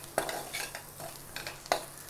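Metal spoon stirring onions and potato cubes frying in a non-stick pan. It scrapes and knocks against the pan several times at irregular intervals.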